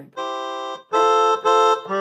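Yamaha PSS-A50 mini keyboard playing three held chords in a reedy voice that the player takes for its harmonica sound, the second and third chords louder than the first.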